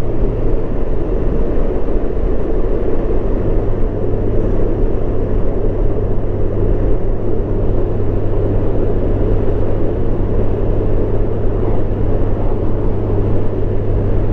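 Honda Gold Wing's flat-six engine running steadily at cruising speed, its low hum mixed with constant wind and road noise from riding.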